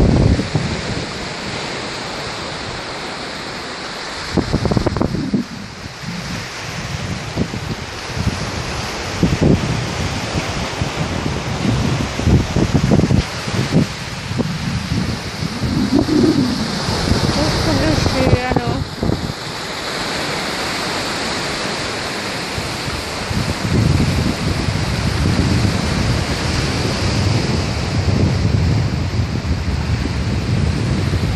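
Small waves breaking and washing up a sandy beach, with wind gusting against the microphone in irregular low rumbles.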